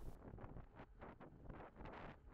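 Near silence, with only faint wind noise on the microphone.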